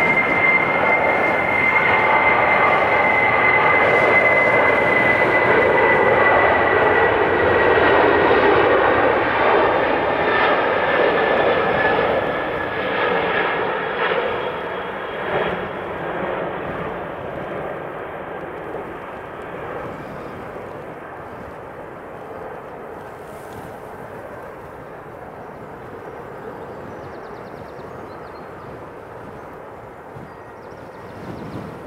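Boeing 747's four jet engines at take-off power as the airliner rolls, lifts off and climbs away, with a steady high fan whine that slides slightly lower in pitch. Loud for about the first twelve seconds, then fading steadily as the jet recedes.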